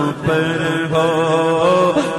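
A voice singing an Urdu naat, holding long, slightly wavering notes between the lines of the verse.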